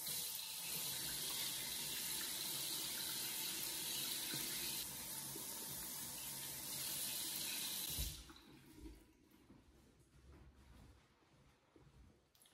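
Water running steadily from a bathroom sink tap while hands are washed under it, cut off suddenly about eight seconds in.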